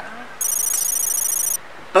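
A high-pitched electronic ringing, a rapid trill like a telephone bell, lasting about a second. It is a sound effect marking the running cost total.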